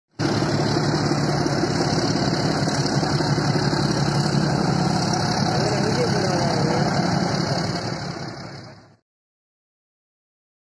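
Diesel locomotive engine running loudly and steadily, its heavy black exhaust smoke showing it under load; the sound fades out near the end.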